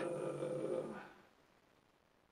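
A man's long, drawn-out hesitation "uhh", held on one pitch and fading out about a second in, then faint room tone.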